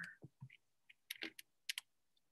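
A handful of faint, irregular clicks and taps on a computer keyboard.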